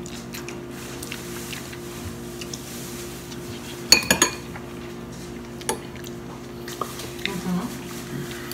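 Metal forks clinking and scraping against clear bowls as two people eat ramen noodles, with scattered short clinks, the loudest about four seconds in. A steady low hum runs underneath.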